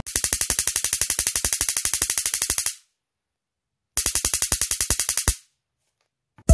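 High-voltage sparks from a homemade battery-powered taser's voltage multiplier snapping across the gap between two wire ends: a rapid, even crackle of about fourteen snaps a second. It runs for nearly three seconds, stops, and comes back for about a second and a half.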